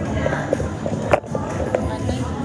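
Background music with people's voices, and a sharp knock about a second in from the phone being handled, with a few lighter taps around it.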